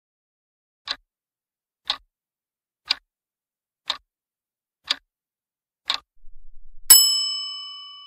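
Countdown timer sound effect: six sharp ticks, one a second, then a bright bell ding that rings on and fades slowly, marking the answer being revealed.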